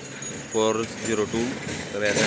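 A man talking in short phrases, with brief pauses between them.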